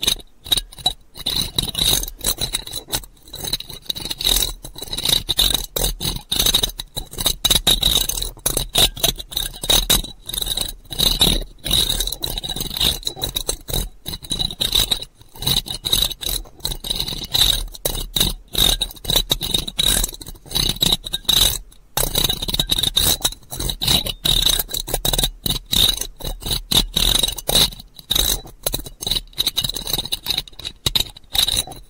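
Close-miked ASMR scratching: fast, irregular scraping strokes that follow one another almost without a break.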